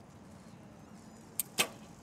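Hoyt recurve bow being shot: two sharp snaps about a fifth of a second apart near the end, the second one louder, as the arrow is loosed.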